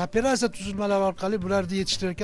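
Speech: a person talking continuously.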